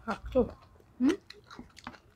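A person chewing a mouthful of rice and chicken curry, with small clicking mouth noises and two brief voiced murmurs, one near the start and one about a second in.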